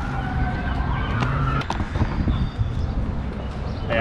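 A faint siren wailing, its pitch sliding slowly up and down, that cuts out a little under two seconds in, over a steady low rumble.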